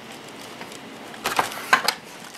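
Cardboard shoebox lid being lifted off the box: two short scraping rustles a little past a second in, after a quiet start.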